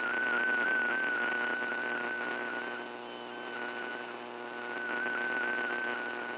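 MFSK32 digital picture signal from the VOA Radiogram shortwave broadcast, heard through a receiver in AM mode: a single wavering tone over steady shortwave hiss and static, weakening briefly about halfway through before coming back up.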